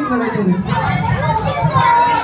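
Young children's voices chattering and calling out over one another.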